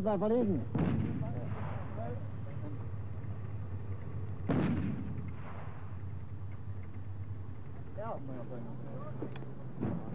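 Two heavy artillery gun blasts about four seconds apart, each trailing off in a long rolling echo, over a steady low hum.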